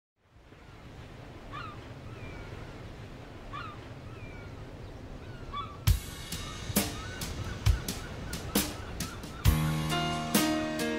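Steady outdoor ambience fading in, with a bird giving three short calls about two seconds apart. Sharp clicks start about six seconds in, and pitched music comes in just before the end.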